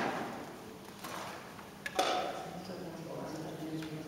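A gap in the playing: two sharp knocks about two seconds apart, each ringing briefly in the room, over low room noise and faint low held tones near the end.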